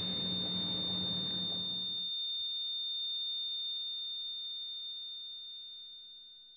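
A heart monitor's continuous flatline tone: one steady high pitch, the sign of no heartbeat. The room noise behind it cuts off about two seconds in, and the tone fades away toward the end.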